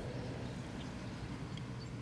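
Quiet outdoor background with a low steady hum and no distinct events.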